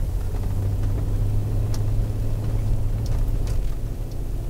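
A car driving at low speed, heard from inside the cabin: a steady low drone of engine and tyre noise.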